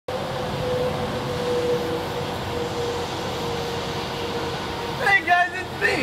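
A steady hum and hiss with a faint constant tone running under it, then a person's voice starting about five seconds in.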